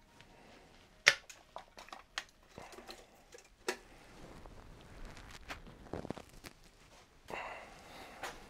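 Cylinder head of a GM Z20LEH engine being lifted off its block: sharp metal clunks and knocks as it comes free of the dowels, the loudest about a second in, with scraping and rustling of handling in between.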